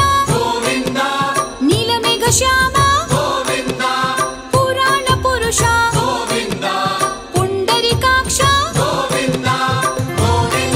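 Hindu devotional music: a chanted vocal line over melody instruments and a quick, steady drum beat.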